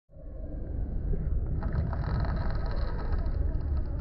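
Wind rumbling on the microphone. From about a second and a half in, a hooked striped bass thrashes and splashes at the water's surface.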